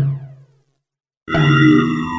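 Low, buzzy, voice-like electronic sound effects. The first dies away with a falling sweep within about half a second. After a gap of silence, a second one starts about a second and a quarter in and is held.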